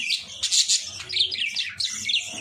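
Several caged budgerigars chirping and chattering: a quick, overlapping run of short high chirps.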